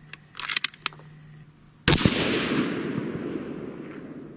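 A .308 Winchester Bergara B-14 HMR bolt-action rifle with a factory radial muzzle brake fires one shot just before two seconds in. Its report trails off over about two seconds. A few short clicks come about half a second in.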